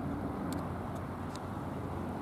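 Steady low vehicle rumble, with two faint short ticks.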